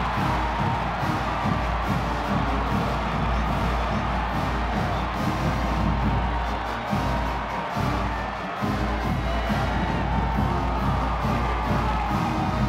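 Marching band playing music with a steady beat, with a large stadium crowd cheering.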